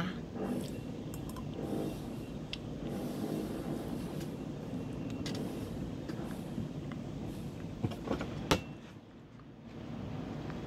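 Eating sounds: a fork and spoon clicking and scraping in a takeaway food container, with two sharp clicks a little past eight seconds in, over a steady low room hum.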